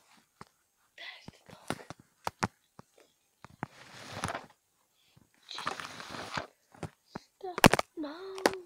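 Small plastic Lego bricks clicking and knocking as they are picked over by hand. There are two short stretches of breathy whispering in the middle, and a quick cluster of loud knocks near the end.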